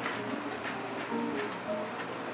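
Quiet background music played on a plucked string instrument, a few held notes changing in pitch.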